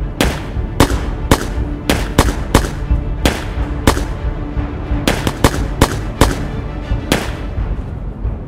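Handgun shots, about fourteen sharp cracks at uneven spacing, several in quick succession around the middle, over a dramatic music score.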